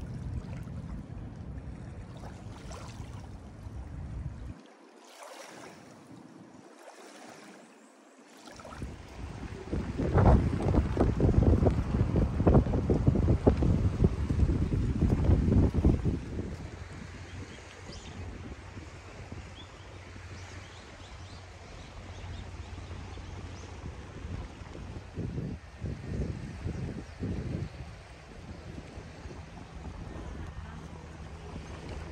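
Small waves lapping on a lake shore in the wind. About ten seconds in, wind buffets the microphone loudly for around six seconds. It then settles to a quieter, steady outdoor wind-and-water ambience.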